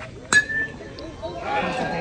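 A metal baseball bat striking a pitched ball: one sharp, ringing ping that dies away within a moment. Spectators' voices start to rise near the end.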